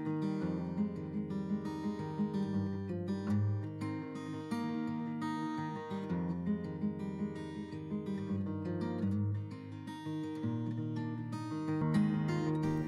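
Background music: an acoustic guitar piece, plucked and strummed.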